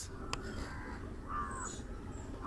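A short knock near the start, then a crow caws once a little past halfway, over a steady low outdoor background.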